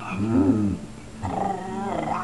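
A woman growling playfully in a low voice, like a dog. There are two drawn-out growls, one near the start and one in the second half.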